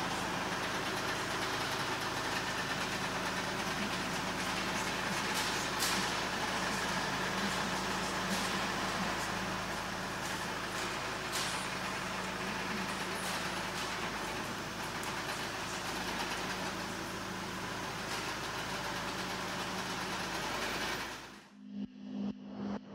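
2016 Wacker Neuson ST35 compact track loader's diesel engine running steadily as the loader arms are raised, with a few sharp knocks from the machine. The sound cuts off suddenly near the end.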